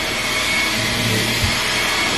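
Dyson V11 cordless stick vacuum cleaner running steadily.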